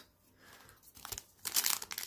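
Foil wrapper of a Panini Prizm football card pack crinkling and crackling as it is handled and torn open. It is faint at first, then a dense run of sharp crackles starts about a second and a half in.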